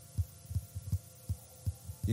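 Soft, low thumps repeating about two or three times a second over a faint steady hum.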